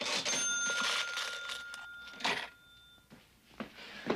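A bell rings out with a clatter, its ring fading away over about two and a half seconds, followed by a single sharp knock.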